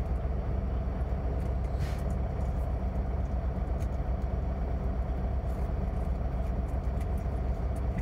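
Semi truck's diesel engine idling: a steady low hum heard inside the cab.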